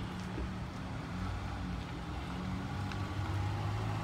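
A pickup truck's engine running as it drives slowly closer, a steady low hum that grows a little louder toward the end.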